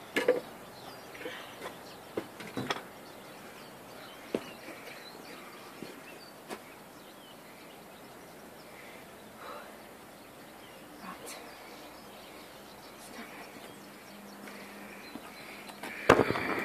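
Quiet outdoor background with a few short knocks and clicks scattered through the first seven seconds, the sharpest just after the start.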